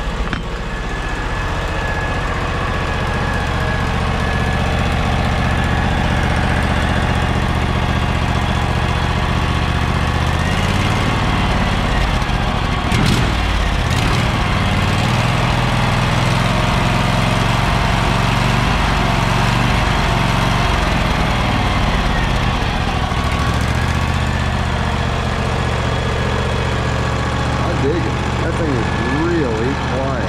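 Briggs & Stratton Vanguard V-twin engine running through a box muffler, smooth and quiet. About ten seconds in it is throttled up to a higher, even speed, then brought back down to idle a little over halfway through.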